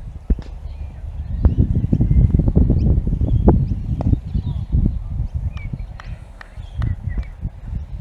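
Wind rumbling and buffeting on the microphone, strongest from about one and a half to four and a half seconds in, with small birds chirping and a few sharp clicks.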